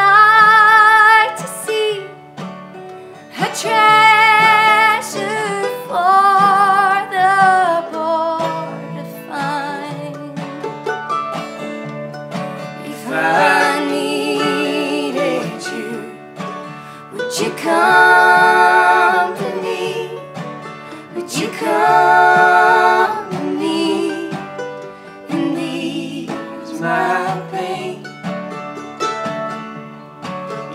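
A slow country-folk song played on acoustic guitars and a mandolin, with male and female voices singing held, wavering notes in phrases.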